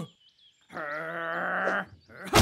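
A wavering, bleat-like vocal cry, lasting about a second, starting a little before the middle.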